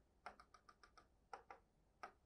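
Faint quick taps of a pen on an interactive whiteboard's touch screen as a dashed line is drawn: about eight light taps in the first second, then two more.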